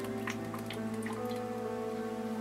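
Background music: sustained held chords that change partway through, with a few faint light ticks over them.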